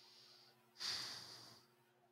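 A person breathing close to the microphone: a faint breath at the start, then a louder, sharper breath about a second in that lasts under a second.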